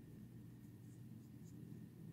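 Near silence: room tone with a faint steady hum, and a few faint light ticks as cotton yarn is worked on a crochet hook.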